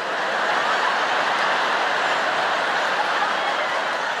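A large theatre audience laughing loudly and steadily in a continuous roar of many voices.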